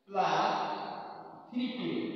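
A man's voice in two drawn-out spoken syllables that trail off, the second starting about one and a half seconds in.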